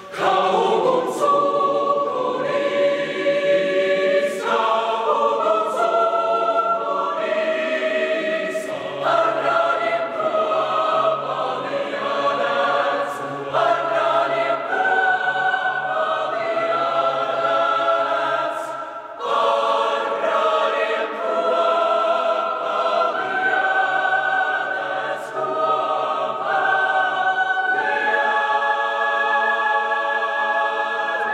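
Mixed choir of women's and men's voices singing sustained chords that move from one to the next every second or two. There is a brief break about two-thirds of the way through before the singing resumes.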